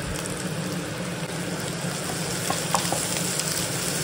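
Diced carrots, green beans and onion frying in mustard oil in a nonstick pan: a steady sizzle, with a few faint clicks a little past the middle.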